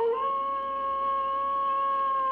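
Wolf howl of the Wolf Films closing logo: one long howl that starts suddenly and holds a nearly steady pitch, dipping slightly near the end.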